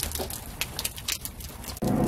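Wash water draining out of a compact portable washing machine through its drain hose, pouring and splashing in an irregular patter.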